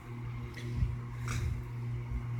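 A steady low hum, with two faint clicks, one just under a second in and another about half a second later.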